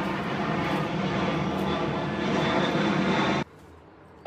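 Airplane passing overhead, a loud steady engine noise that cuts off suddenly near the end.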